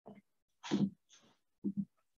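A few short bursts of a person's breath and throat noise over a video-call microphone, the loudest about three-quarters of a second in, with dead silence between them.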